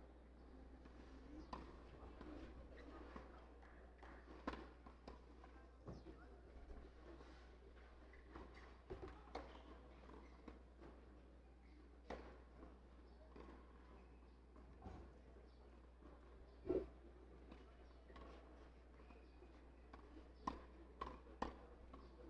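Near silence between points on a clay tennis court: a steady low hum with scattered faint knocks and footsteps, one louder knock about three quarters through and a few more near the end.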